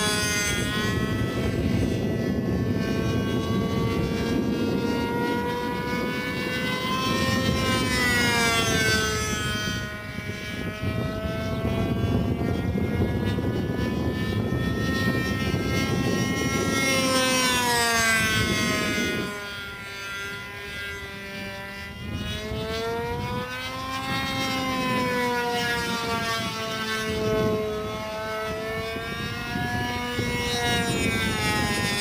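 Radio-control GeeBee profile 3D model plane flying tailless on elevons, its engine and propeller note rising and falling in pitch as it throttles and passes overhead. About two-thirds through, the note drops lower and quieter for a few seconds before climbing again.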